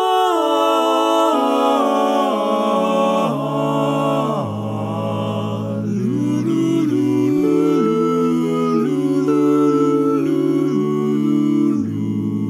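Male vocal quartet singing a cappella in close barbershop harmony: wordless, humming-like sustained chords that move together from one to the next, with the bass part stepping lower about four seconds in.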